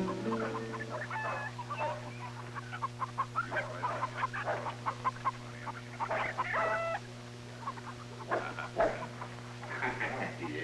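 Chickens clucking in short scattered calls, with a longer squawk about six seconds in, over a steady low hum from the old soundtrack. The last notes of a guitar end about half a second in.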